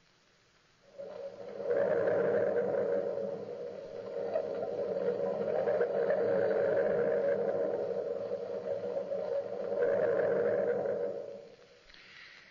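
A held, moaning drone swells in about a second in, holds for about ten seconds with overtones that rise and fall, then fades out near the end: a scene-change bridge in an old-time radio drama.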